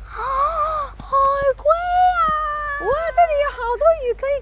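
A young child's high-pitched voice in several long, drawn-out wailing cries.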